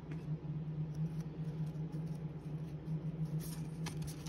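1993 Leaf baseball cards being handled and slid against one another in the hand, soft rustles and a few light clicks, the sharpest near the end, over a steady low hum.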